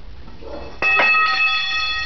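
A sudden metallic strike followed by a bright ring of several steady high tones that fade away over about a second and a half.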